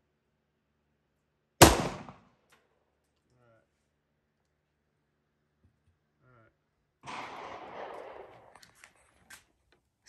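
A single pistol shot from a Browning Hi-Power 9mm, sharp, ringing away over about half a second. A softer hiss of noise follows from about seven seconds in.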